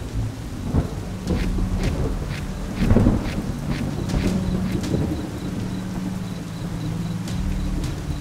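A thunderstorm: steady rain with a low rumble of thunder that swells loudest about three seconds in.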